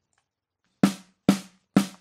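Snare drum, the recorded snare doubled with a sampled snare triggered from MIDI, played back from a rock drum track. Near silence at first, then three sharp snare hits about half a second apart, starting a little under a second in, each ringing briefly.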